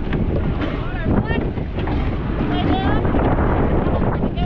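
Wind buffeting the microphone on a rowing surf boat at sea, over the rush and splash of water along the hull, with faint voices shouting in the background.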